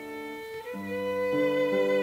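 Violin and piano playing a slow lullaby. The violin holds long notes, and about two-thirds of a second in a new phrase starts with low piano notes underneath.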